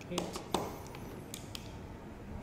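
Several light clicks and taps of small plastic connectors and wires being handled as the program card's lead is unplugged from a boat ESC.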